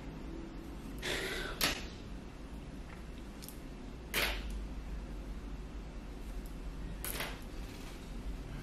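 Hair clips being opened and taken out of freshly twisted locs: a few brief clicks and rustles, spaced a few seconds apart, with one sharp click about a second and a half in.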